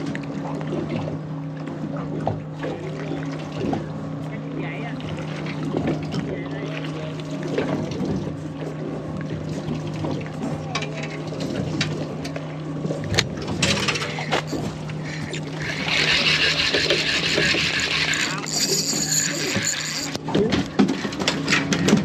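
A spinning reel clicks as it is wound in while a fish caught on a lure is fought to the boat, over the steady low hum of an idling boat engine. Near the end comes a few seconds of loud splashing as the fish is brought in.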